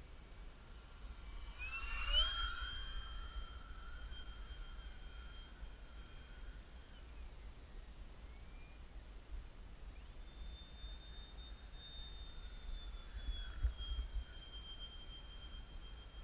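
Whine of a ParkZone Habu's electric ducted fan passing overhead. Its pitch rises sharply about two seconds in as the throttle opens, holds steady, and drops away near seven seconds. The whine comes back about ten seconds in and steps slightly lower near the end. Wind buffets the microphone throughout, as a low rumble.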